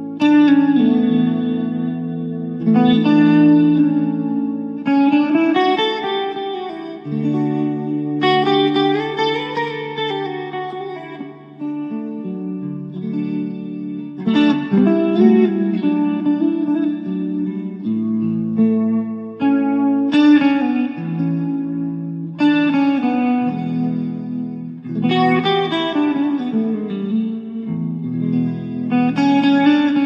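Background music: sustained chords that change every two to three seconds, with no speech.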